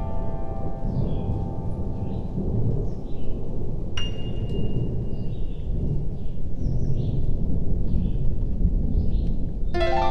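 Steady low rumble of a rainy thunderstorm, with faint high notes above it. A single bright bell-like ping rings about four seconds in, and a harp-like chord is struck near the end.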